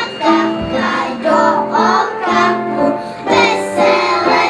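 A group of young children singing a song together, in held, sung notes.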